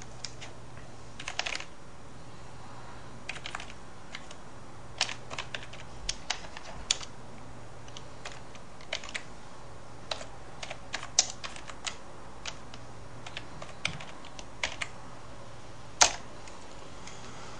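Irregular key taps on a computer keyboard, keying numbers into a calculator program, over a faint steady low hum.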